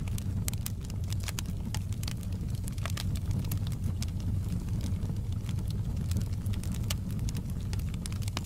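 Wood fire burning in a fireplace: a steady low rumble of the flames with frequent, irregular sharp crackles and pops from the burning logs.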